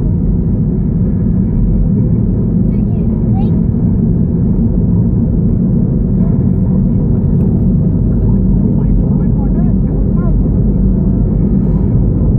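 Steady, loud road and engine rumble inside a moving car's cabin.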